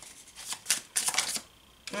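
A deck of oracle cards being shuffled by hand: a quick run of card flicks through the first second and a half, then a pause.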